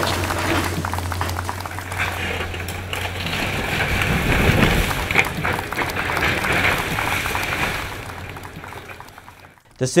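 CAT excavator demolishing a house: its engine running under the cracking and crunching of breaking walls and roof as the structure collapses. The noise fades out near the end.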